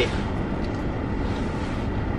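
Steady low hum inside a stationary car.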